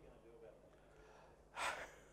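A man's sharp breath, close on the microphone, about one and a half seconds in, drawn just before he speaks. Before it, only faint room tone with a few distant voices.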